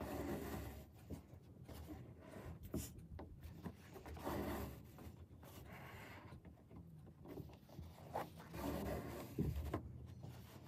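An embroidery needle and thread being drawn through fabric stretched in a wooden hoop: several soft rubbing, scraping swells as the thread is pulled through the cloth, with a few light ticks between them.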